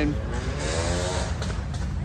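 A vehicle engine running, its pitch rising and then levelling off over about a second, over a steady low rumble.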